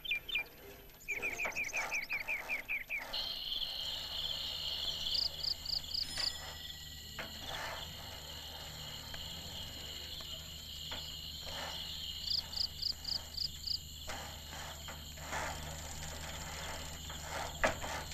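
Night insects, crickets, trilling steadily from about three seconds in, with short runs of quick chirps over the trill twice. Just before, a faster series of chirps.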